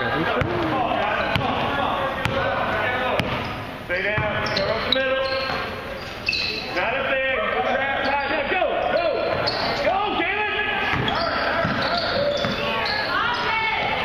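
Basketball bouncing on a hardwood gym floor during play, amid voices of players and spectators echoing in the hall.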